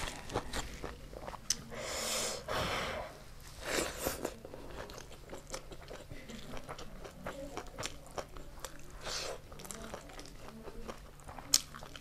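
Close-miked eating sounds: a person biting and chewing food with crunchy bites, amid many small wet clicks of chewing and mouth sounds, with one sharp click near the end.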